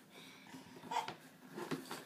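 Faint, mostly quiet passage with a baby's soft grunts while climbing into a plastic toy bin: one short grunt about a second in and smaller sounds near the end.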